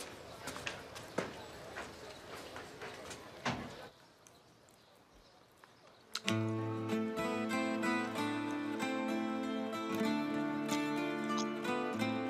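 Scattered footsteps and small knocks as people walk in through a doorway. After a short quiet, soft background music of held notes over a low bass comes in about six seconds in and carries on.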